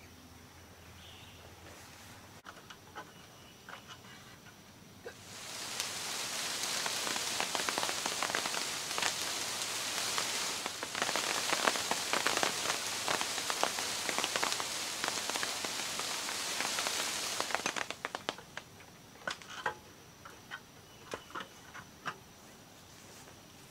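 Small wild black cherries pattering down onto a plastic tarp as the tree is shaken: a dense, rain-like rush of many tiny ticks that starts about five seconds in and lasts about twelve seconds, then a few last stray drops.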